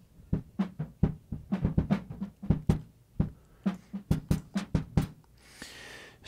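A drum-kit sample playing back through a dynamic lowpass filter (the Airwindows DeHiss plugin) pushed very hard, so the hits come through dull and muffled with the highs rolled off, about three to four hits a second. Near the end a faint wash of treble comes through.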